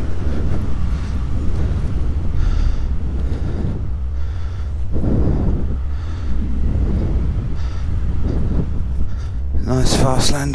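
Wind rumbling and buffeting on the pilot's microphone during an unpowered paramotor glide after an engine out; no engine is running. A louder burst comes just before the end, as the glide reaches the ground.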